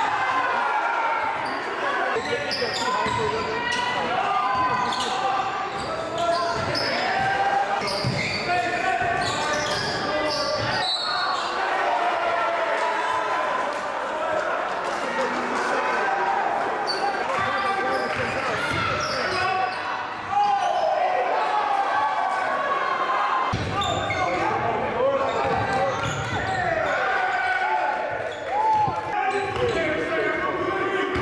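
The live sound of a basketball game in a large gym: many overlapping voices of players and spectators, with a basketball being dribbled on the hardwood.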